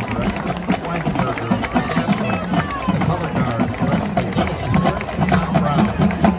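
Marching band playing: low brass chords held and changing in steps, with percussion hits throughout, and spectators talking close by.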